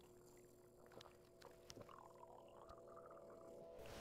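Near silence: faint outdoor room tone with a few soft clicks.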